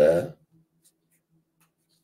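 A man's speech ends just after the start, followed by a near-silent pause with a faint steady hum and a few faint small ticks.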